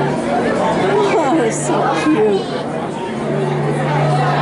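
Indistinct chatter of several people talking at once, no one voice standing out, with a steady low hum underneath.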